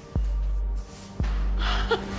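Dramatic background music of a soap opera score: two deep bass hits about a second apart, each followed by a held low bass note, and a short breathy gasp near the end.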